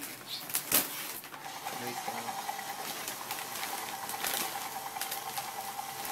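Battery-powered toy rescue helicopter: a click less than a second in, then its small electric motor runs with a steady whine and a light ticking.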